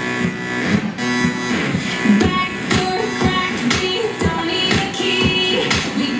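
Pop music with a steady beat, played loudly through display speakers.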